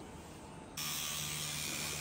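Tattoo machine running on skin: a steady low hum under a hiss that starts suddenly about a second in, after faint room tone.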